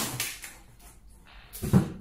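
Plastic wrapping rustling and cardboard scraping as a plastic-wrapped vacuum cleaner body is pulled out of its box, with a short thump near the end.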